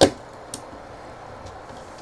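1.5 mm hex screwdriver working a small self-tapping screw out of a plastic printer base, with a faint click about half a second in, over low steady room noise.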